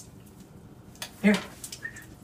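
Mostly quiet room with a faint click at the start, then a short spoken word about a second in, followed by a few faint clicks.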